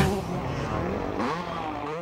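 Motocross dirt bike engines revving on the track, the pitch rising and falling as the bikes accelerate and back off.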